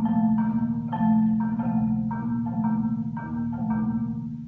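A percussion ensemble on marimbas and other mallet keyboard instruments playing a chordal phrase. Struck notes change about every half-second over a sustained low ringing, and the phrase dies away near the end.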